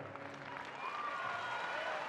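Audience applauding, fairly faintly.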